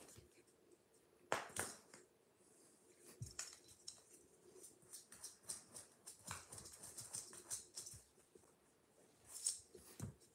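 A cat rolling and pawing on a soft fabric-covered sofa: faint rustling and light scratchy taps, with two sharper brushes, about a second and a half in and again near the end.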